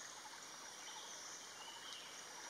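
Faint, steady outdoor background with a high, even hiss and no distinct calls or knocks.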